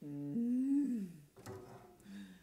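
A woman's improvised vocal hum: a low note that steps up and then slides back down over about a second. It is followed by a short soft knock with a faint low tone after it.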